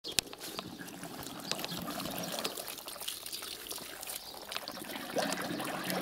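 Water running from a hose into a full enamel pot and spilling over its rim, a steady trickling and splashing. There is a sharp click near the start.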